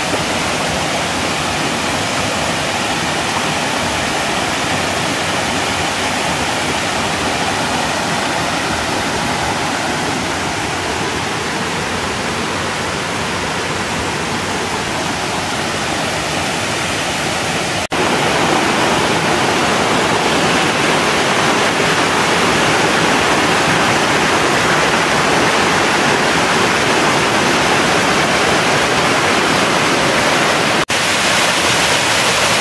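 Waterfall cascading over rock ledges: a steady rushing of falling water. About eighteen seconds in it cuts out for an instant and comes back slightly louder.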